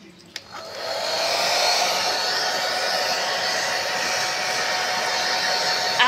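Flyco hair dryer: a click, then it starts up, building over about a second into a steady blowing whir with a faint steady hum.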